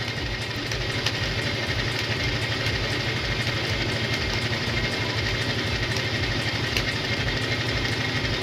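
Motorcycle engine idling steadily with an even low pulse, and a thin steady high tone above it.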